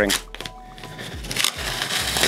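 Handling of a wide roll of paper masking tape, with fingers scratching at its edge to pick it loose. A faint rustle grows near the end.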